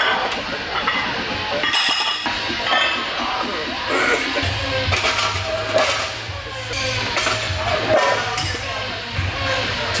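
Music with a steady low bass line, over a few metallic clinks of iron 45 lb plates being slid onto a barbell.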